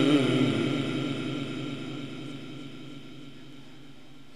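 The last held, wavering note of a Quran recitation over a loudspeaker system ends about half a second in, and its long reverberant echo dies away slowly over the next few seconds.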